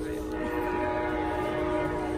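Train horn sounding one long, steady blast, a chord of several notes held at an even pitch.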